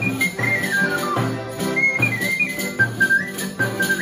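A Sicilian polka played live on a small end-blown flute, accordion, acoustic guitar and tambourine. The flute carries the high melody, with a quick run falling in pitch about half a second in, over the accordion's held chords, a steady bass beat and the tambourine's jingles.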